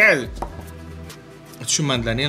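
Music with a singing voice: a held note with a wide, wavering vibrato ends just after the start, a quieter stretch of steady held instrumental tones follows, and the wavering singing returns near the end.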